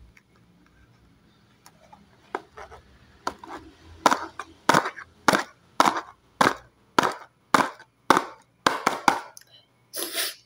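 A regular series of sharp taps, a little under two a second, faint at first and louder from about four seconds in, from bars of soap being handled against their cardboard box.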